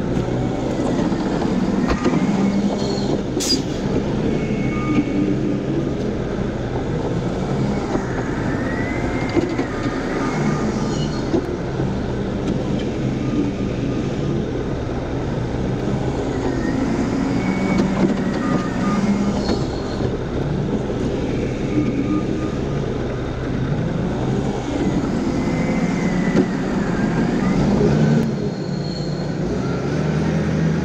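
Diesel engines running steadily, with an engine note that rises and falls every few seconds as the JCB telehandler revs to lift its grab loads of muck. There is one sharp clank about three seconds in.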